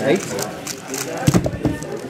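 A Moyu Aolong V2 speedcube turned rapidly, with a couple of sharp knocks a little past halfway as the cube is set down and the hands come down flat on the table to end the solve. Voices murmur in the background.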